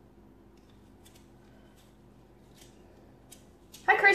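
Faint, scattered short scratches and ticks, about one or two a second, from makeup being worked onto skin with black colour, over a steady low room hum.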